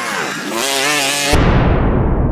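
A UTV's engine revs with a wavering, rising pitch as it climbs a sand hill. About a second in it is cut off abruptly by a sudden, loud rush of noise, the intro sound effect.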